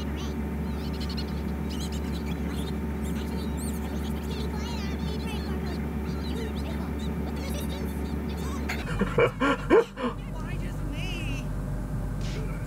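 Cartoon episode soundtrack: a steady low background with faint high chirps, then a loud run of four quick pitched cries about nine seconds in, followed by a short buzzing trill.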